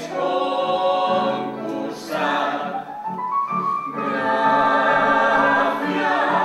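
An ensemble of voices singing together in chorus, holding long notes, with a rising phrase about halfway through.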